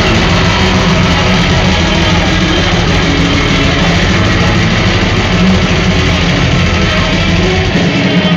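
Metalcore band playing live at full volume: distorted electric guitars and drums in one dense, steady wall of sound.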